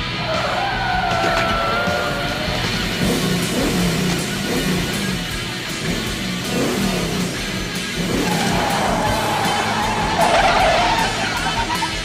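Rock soundtrack music over a 1970 Dodge Challenger's engine at speed, with tyres squealing as the car slides through a turn near the end.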